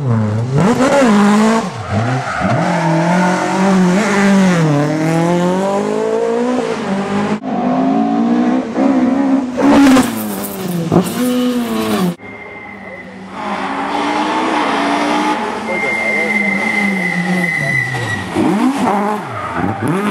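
Rally car engines revving hard and dropping off as cars slide through tarmac corners, heard in several edited clips that change abruptly twice. A steady high tyre squeal is heard near the end, under a quieter engine.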